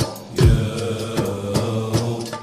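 Male vocal ensemble chanting an Islamic devotional song (inshad) in sustained, drawn-out notes, with a low drum beat about half a second in.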